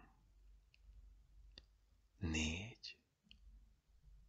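Faint mouth clicks and lip noises from a close-miked voice in a quiet room, with one softly spoken word about two seconds in.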